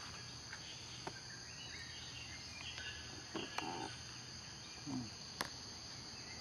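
Steady high-pitched drone of insects, with a few sharp clicks and short soft handling noises over it.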